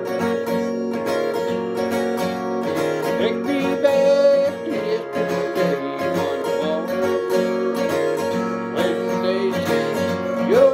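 Acoustic guitar strummed, ringing out the chords of a country song at a steady, even level.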